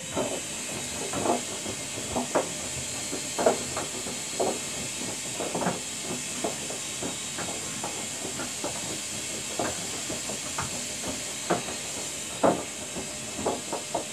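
Front-loading washing machine in its heated main wash: wet laundry tumbling in soapy water in the drum, sloshing and splashing about once a second over a steady high hiss.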